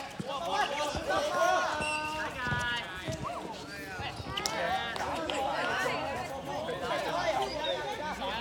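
Several voices of players calling out and chattering at once, some of them high shouts, with a few short knocks among them.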